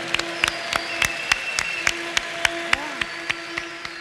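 Large congregation applauding: a dense wash of clapping with sharp individual claps standing out, and a few faint held tones underneath.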